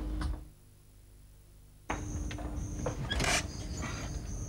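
A wooden front door being opened, with a short scraping rustle about three seconds in, over a faint high, on-and-off whine. Before that there is a second and a half of near silence that starts suddenly.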